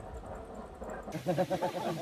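A low rumble, then from about a second in a man laughing in quick, even pulses.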